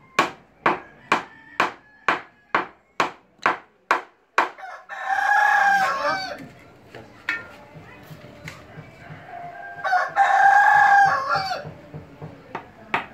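Hammer blows nailing a wooden batten frame, about ten sharp strikes at roughly two a second, stopping after about four seconds. Then a rooster crows twice, each crow lasting about a second, the second one near the end, with a few light taps in between.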